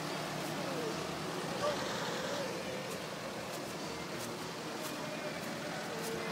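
Daihatsu Feroza 4x4 engine idling steadily, with faint voices in the background.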